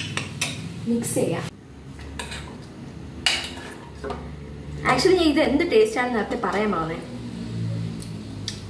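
Metal spoon clinking and scraping against a stainless-steel bowl while stirring crêpe batter, with several sharp clinks in the first few seconds. A voice is heard for a couple of seconds past the middle.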